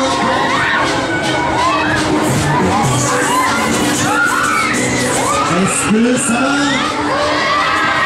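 Riders on a spinning Break Dance fairground ride screaming and yelling, many voices overlapping, over fairground music.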